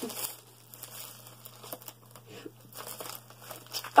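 Packaging crinkling and rustling in short, irregular bursts as it is handled, with contents being pulled out of a mailed package.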